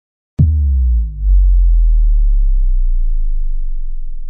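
Synthesized countdown-intro sound effect: a sudden deep boom about half a second in, its pitch sliding downward, settling into a low hum that slowly fades. A faint high steady tone sits above it from about a second in.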